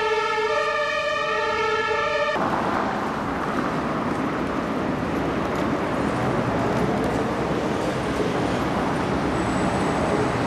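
A siren's steady tone that cuts off abruptly about two seconds in, followed by busy city street noise with traffic.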